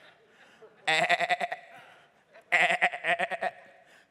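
A man imitating a sheep's bleat, two wavering "baa" calls about a second and a half apart.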